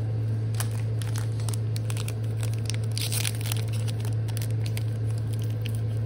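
A foil Pokémon booster pack wrapper crinkling and tearing as it is torn open by hand, with a denser burst of crackle about three seconds in and small clicks of cards being handled. A steady low hum runs underneath.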